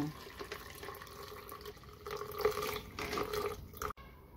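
Tea-based brine poured through a metal mesh strainer into a plastic bottle, splashing and trickling steadily. A faint steady ringing pitch comes in during the second half as the bottle fills, and the sound cuts off abruptly just before the end.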